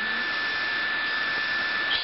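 Steady hiss of background equipment noise with a thin, constant high-pitched whine running through it.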